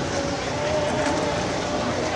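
Barbershop chorus tenors singing the tenor harmony line on its own, the part pitched above the melody, holding one high note that fades out about halfway through over a steady noisy background.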